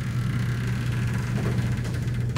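Steady low hum of room tone with no speech.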